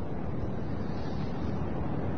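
Steady background hiss and low rumble of the recording, with no speech and no distinct events.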